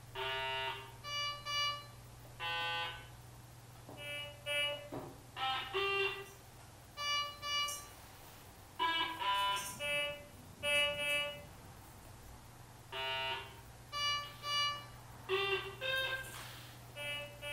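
Electronic beeps and tones in short, irregular groups, each a clear pitched blip, a few gliding down or up in pitch, with a brief pause near the end, over a steady low hum.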